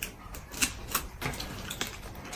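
Eating sounds: wet mouth clicks and smacks from chewing braised chicken and fruit, coming irregularly several times a second.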